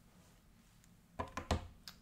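A quick run of four or five sharp clicks and knocks, starting a little over a second in, from hands handling the camera during a battery swap.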